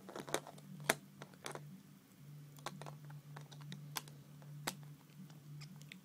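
Plastic Lego bricks clicking and tapping as they are handled and pressed together: a dozen or so irregular sharp clicks over a faint steady low hum.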